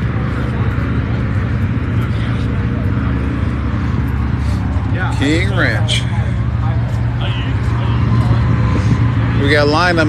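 A vehicle engine idling steadily with a constant low hum, and people talking briefly in the background twice.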